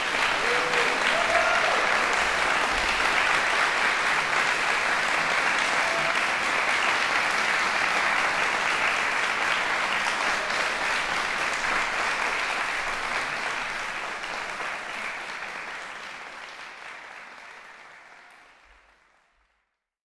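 Audience applause, dense and steady, fading away over the last few seconds.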